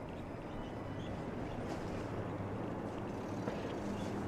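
City street ambience: a steady low hum of road traffic, growing slightly louder toward the end.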